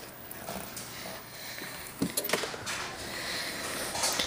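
Static discharges snapping off a switched-on CRT television screen: a few short, sharp snaps about halfway through.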